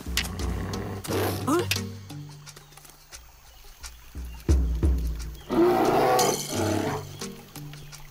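Cartoon soundtrack: a creature's growling vocalisations, about a second in and again more loudly around the sixth second, over background music with low held notes and a few sharp percussive hits.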